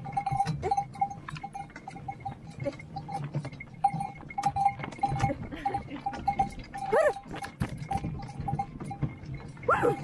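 A bell on a sleigh horse's harness ringing on and off as the horse trots through snow, over irregular clicking and rattling from the moving sleigh. A short call cuts in about seven seconds in.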